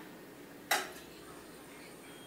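A single short tap or clatter, once, under a second in, against faint room tone.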